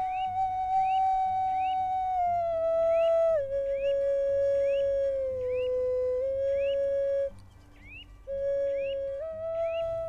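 Wooden Native American-style flute playing a slow melody of long held notes that step up and down in pitch, with a short break about seven seconds in. Short rising chirps repeat about twice a second above the melody.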